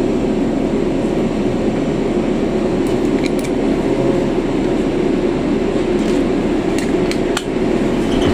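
Steady low running and road noise heard inside a city bus travelling between stops, with a few light clicks or rattles about three seconds in and again near the end.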